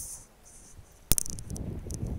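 A single sharp knock about a second in, followed by low rumbling noise.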